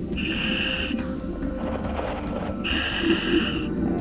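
Scuba diver breathing through a full-face mask's regulator: two hissing breaths, each about a second long, a couple of seconds apart.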